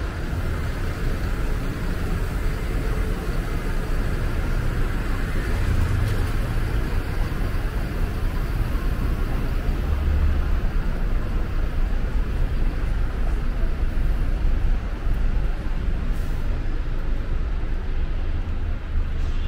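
City road traffic, with buses and other vehicles going by as a steady low rumble.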